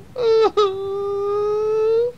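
A young child's wailing cry, pretend crying that acts out the story: a short cry, then one long note held at a steady high pitch.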